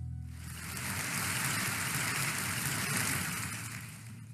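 Audience applause, coming up just after the start and dying down near the end, as a guitar intro fades out.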